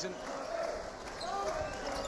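Basketball being dribbled on a hardwood court during play, with arena voices and crowd noise around it.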